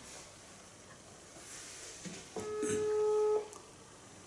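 A phone's ringback tone through its speaker: one steady beep about a second long, a little past halfway, with a click just before it. It is the outgoing call ringing at the other end, not yet answered.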